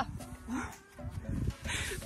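A hiker breathing hard and letting out a couple of short, low voiced groans, winded at the top of a steep climb.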